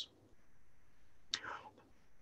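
A pause in a man's speech: faint steady hiss, with one short, soft intake of breath about a second and a half in.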